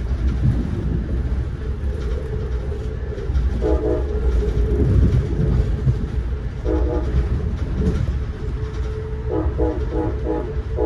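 Steady rumble of a passenger train running, heard from inside a coach. A train horn sounds a short blast about four seconds in and again about seven seconds in, then a run of quick toots near the end.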